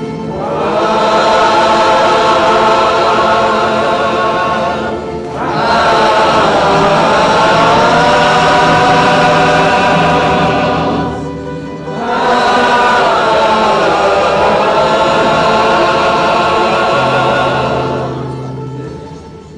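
Mixed choir of men's and women's voices singing, in three long sustained phrases with short breaks between them, about five seconds and eleven seconds in.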